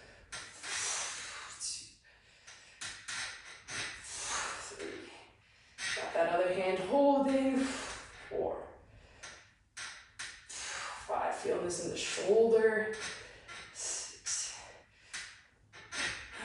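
A man breathing hard with effort while pressing dumbbells: forceful breaths through the mouth every couple of seconds, in time with the reps. Twice there is a short voiced sound, a strained grunt or a muttered word.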